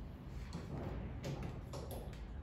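A few faint clicks in the second half, over a low steady hum: the solenoid in the lithium battery's BMS engaging as the charger's communication cable goes in, the sign that charging has started.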